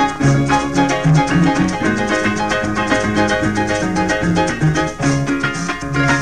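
Instrumental passage of Venezuelan llanero music, with the llanera harp playing quick plucked runs over a steady bass line and rhythm accompaniment, no singing.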